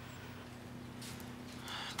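Quiet room tone with a steady low hum. A faint soft rustle comes about a second in.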